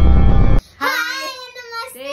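Loud, bass-heavy intro music that cuts off suddenly about half a second in, followed by a young girl's voice in a high, sing-song greeting.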